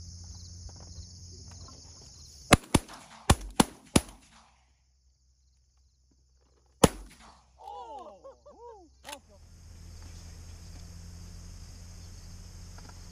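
Shotguns firing at pigeons: a quick volley of five shots about two and a half seconds in, then one more shot about seven seconds in.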